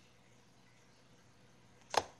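Near silence: faint room tone, broken just before the end by one brief sharp sound.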